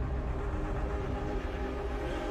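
Low, steady rumbling drone with a few held tones underneath: the sound design of an animated brand logo ident.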